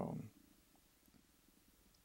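A man says "So", and the word trails off into a faint low creak in his voice, then quiet room tone.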